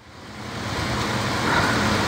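A steady rushing hiss with no clear tone or rhythm, swelling up over the first second and then holding level.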